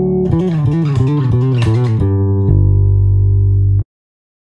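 Electric bass guitar playing a fast run of single notes in G major, plucked with three-finger technique and slurred with legato hammer-ons. About two and a half seconds in, the run ends on a ringing two-note chord with the open D string, which is cut off suddenly shortly before the end.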